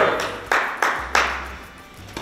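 Three quick, sharp smacks about a third of a second apart, each echoing briefly in a large indoor hall.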